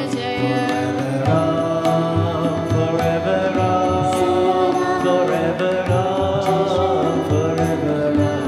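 A Hanuman bhajan played live, with singing over harmonium, acoustic guitar and tabla.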